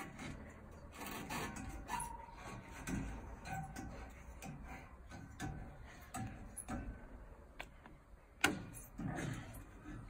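Scattered light clicks and knocks as a child swings hand over hand along metal playground monkey bars, with one sharp knock about eight and a half seconds in.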